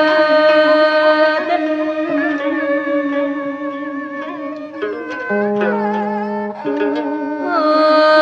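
Vietnamese folk song with traditional instruments: long held melodic notes and a few plucked string notes, with the female singer's voice coming back in near the end.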